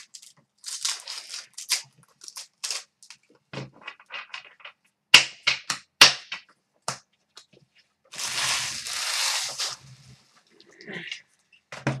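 Foil trading-card pack wrappers crinkling and cards clicking against a glass counter as they are gathered and sorted, in short irregular crackles, with a longer rustle of about a second and a half a little past the middle.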